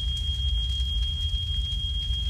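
Steady low rumble of a burning room's flames, a cartoon fire sound effect, with a thin steady high-pitched whine above it.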